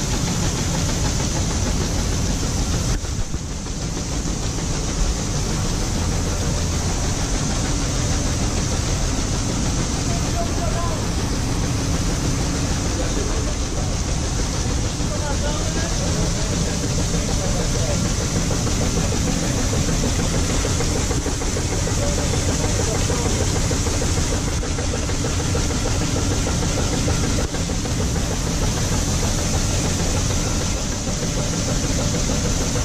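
Tractor engine running steadily while grain pours from a tipped trailer into an intake hopper, giving a continuous even rush of machine noise.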